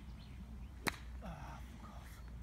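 A golf club striking the ball: one sharp crack a little under a second in.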